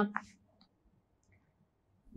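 A woman's voice ends a short spoken question in the first moment, then near silence with a couple of faint clicks.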